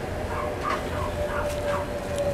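Two bully puppies playing, giving a run of about five short, squeaky whimpering play noises.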